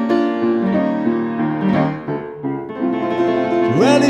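Upright acoustic piano playing blues chords and fills between sung lines. A man's singing voice comes back in near the end.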